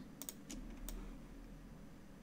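A few faint clicks from computer input devices in the first second as the shapes are selected and duplicated, then low room hiss.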